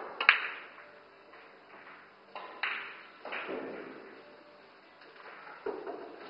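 Pool cue striking the cue ball, then a sharp click as the cue ball hits an object ball. Further knocks of balls against the cushions come a couple of seconds later, and a dull thump near the end.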